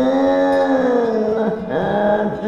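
A man singing karaoke, holding one long note that sinks slowly in pitch over a backing track. The note breaks off about one and a half seconds in, and a new one starts near the end.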